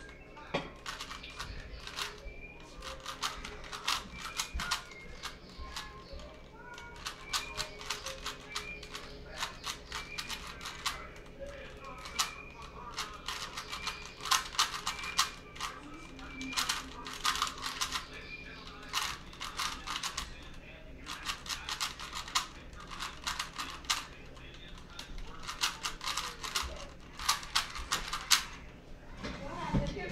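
3x3 Rubik's cube being turned rapidly in a speedsolve: quick runs of plastic clicks and clacks as the layers snap round, in bursts with short pauses between.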